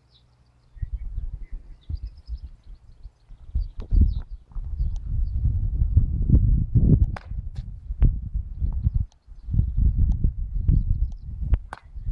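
Gusty wind buffeting the camera microphone, an irregular low rumble, with a few sharp clicks. Near the end a sharp crack as a katana cuts through a rolled straw target.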